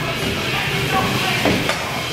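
Skating treadmill running steadily under a goalie's skates as he pushes against the moving surface, with two sharp clicks about a second and a half in.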